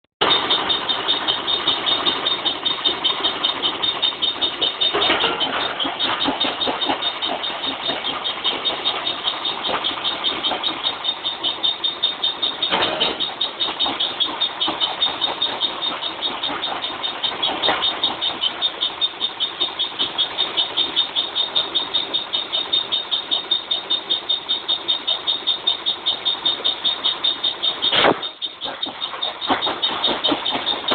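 Brick crusher machine running and grinding broken brick, a continuous mechanical clatter with a fast, even pulse. A few sharp knocks stand out, the loudest near the end.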